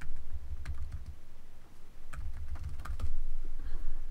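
Typing on a computer keyboard: light, irregular key clicks over a low rumble.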